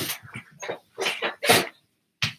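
Five or six short bursts of rustling and handling noise as a person gets up and moves past a computer's built-in microphone.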